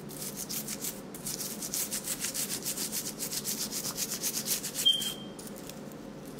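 Toothbrush bristles scrubbing a gold grill coated in whitening toothpaste, in quick, even back-and-forth strokes at about six a second that stop about five seconds in.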